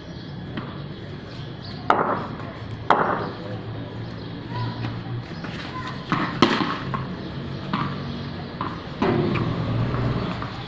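A tennis ball used for cricket knocking sharply about four times, near two, three, six and a half and nine seconds in, as it is bowled and strikes the tiled ground, the wall and the bat.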